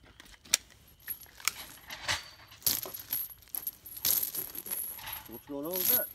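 Light metallic clinking and rattling with scattered sharp clicks, in several short bursts.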